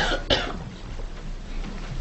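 A person coughing twice in quick succession, then quiet room noise.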